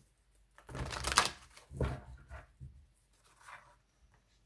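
A deck of tarot cards being shuffled by hand: a few quick rustling bursts, the loudest about a second in, then fainter handling of the cards.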